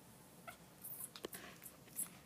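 African grey parrot making faint, short sounds: a few soft clicks, then a brief call a little over a second in, ending in a sharp click.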